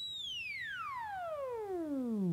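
Theremin tone making one long, smooth downward glide from very high to very low as the player's hand draws back from the pitch antenna, while the instrument's pitch field is being set up.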